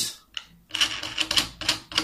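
Quick run of small plastic clicks as the black clamping nut of a mini drafter's head is screwed on clockwise, thickening into a dense clatter from under a second in.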